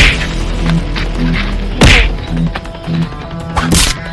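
Punch and whack sound effects for a staged fist fight: three loud hits, one near the start, one about two seconds in, one near the end, over background music.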